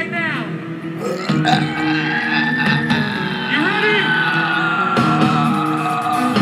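Live rock band playing between songs: low notes held steadily under one long high tone that drifts slowly down in pitch, with shouted voices from the stage or crowd.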